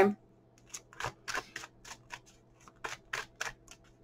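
Tarot deck being handled and shuffled by hand: an irregular run of light, quick card clicks and flicks.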